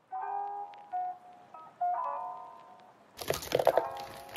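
Soft instrumental background music playing a melody of single notes. About three seconds in, a quick run of sharp clattering knocks, frozen fruit chunks going into a plastic blender jar, is the loudest sound.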